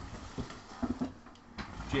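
A few faint clicks of a computer mouse in a quiet room, with one short low sound about a second in.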